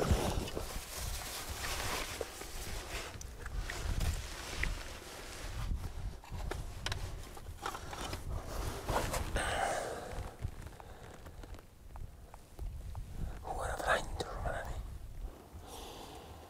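Low whispering and rustling of clothing and gear as a spotting scope on a tripod is set up, with short clicks of handling and a steady low wind rumble on the microphone.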